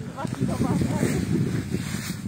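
Indistinct voices of people talking, with no words clear enough to make out.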